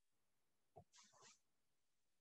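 Near silence on a remote-meeting feed, broken by one faint, short, hissy sound about a second in.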